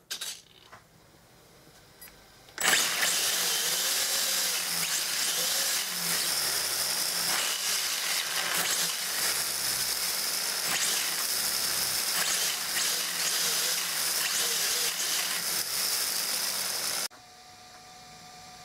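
Tamiya TT-01 RC car's electric motor and shaft-driven four-wheel-drive drivetrain running at speed with the wheels spinning in the air, a steady, high whirring. It starts abruptly a few seconds in and cuts off abruptly near the end.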